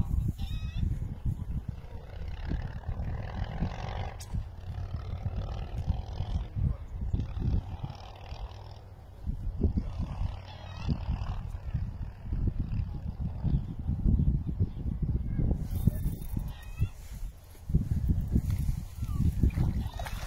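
Low, gusty rumble on the microphone, typical of wind. In the last few seconds a hooked trout splashes and thrashes at the water's surface.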